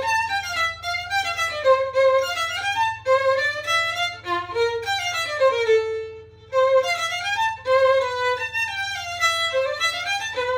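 Solo violin playing a quick passage of separate bowed notes that run up and down in pitch. A little past the middle a lower note is held and fades into a brief gap, then the quick notes start again.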